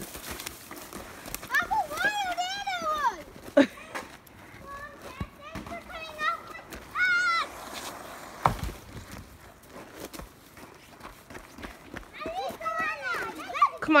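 Children shrieking and calling out in high, gliding voices while sledding, in three separate bursts, with a few sharp knocks in between.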